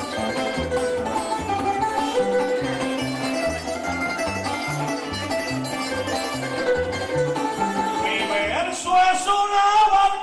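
Instrumental interlude of Cuban punto guajiro: a string band of laúd and guitars plays the tune over a stepping bass line. About eight and a half seconds in, a male voice comes in singing over the band.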